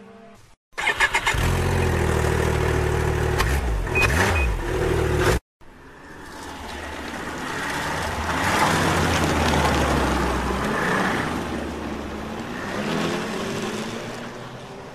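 Snowmobile engine starting about a second in, catching with a few sputters, then running steadily with a couple of small revs before the sound cuts off abruptly about five seconds in. A second snowmobile recording follows: the engine approaches, is loudest around nine to ten seconds in as it passes, then moves away, with a smaller swell near the end.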